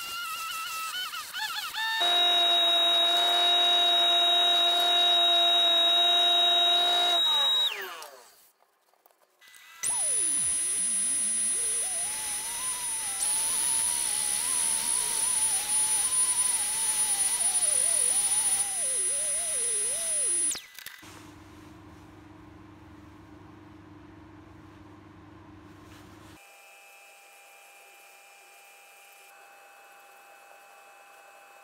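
High-pitched electric power-tool motor whines in separate takes: one steady whine for about six seconds, a short gap, then a rotary carving tool whining for about ten seconds, its pitch wavering as it loads up cutting into the wooden bowl. A quieter low hum follows near the end.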